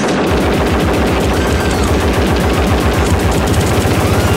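Early hardcore (gabber) track in a DJ mix: a fast run of rapid, evenly repeated distorted hits with heavy bass, starting abruptly.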